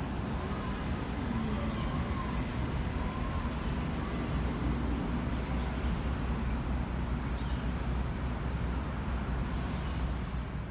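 Steady urban traffic noise: a constant low rumble of road vehicles, with faint wavering tones in the first few seconds.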